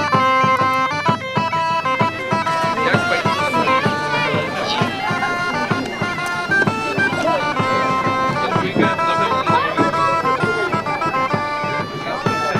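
Wind-instrument music: a melody of held notes stepping up and down, with faint voices behind it.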